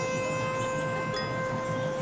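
Marching band front ensemble playing a quiet passage: a long ringing note from chimes, with a bright, shimmering strike about a second in.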